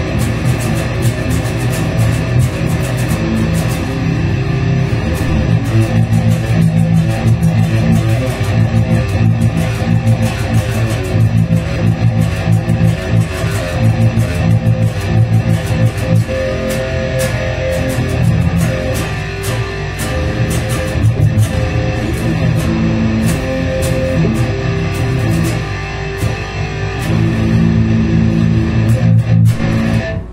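Seven-string Cort electric guitar played through a Xiaokoa wireless guitar transmitter into an audio interface: continuous picked riffs and chords with a heavy low end. The playing stops abruptly at the end.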